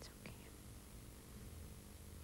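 Near silence: a faint steady low hum, with a brief soft breathy sound, like a breath or a whisper, in the first half second.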